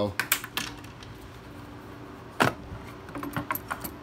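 Hand tools clicking and clinking against each other and the toolbox rack as they are handled and pulled from their slots: a few clicks at the start, one sharp knock about two and a half seconds in, and a run of light clicks near the end as a wrench is drawn out.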